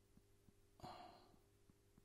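Near silence, broken about a second in by one short, soft breath out, a sigh.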